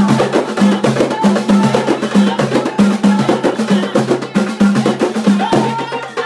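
Several hand-struck frame drums playing a fast, driving hwariyat rhythm. Low booming strokes alternate between two pitches under a dense patter of sharp rim and skin hits, with women's voices singing along.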